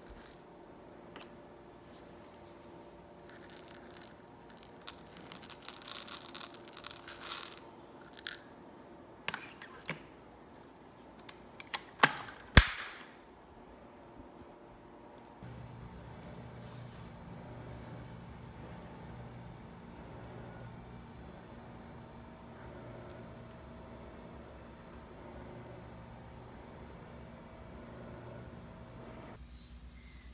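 Scent beads poured into the clear plastic bin of a Dyson upright vacuum, with rustling and clicking as the bin is handled, and one sharp plastic click a little before halfway, the loudest sound. After that, a steady low hum.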